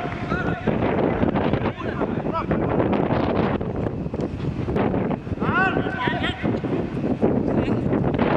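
Wind buffeting the microphone, with distant shouts and calls from footballers on the pitch; the clearest short calls come near the start and about six seconds in.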